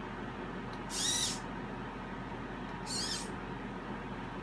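Hobby servos in a 3D-printed robotic hand whirring as the fingers move: two short high-pitched whirs, about half a second each, one about a second in and one near the end, with a steady hiss underneath.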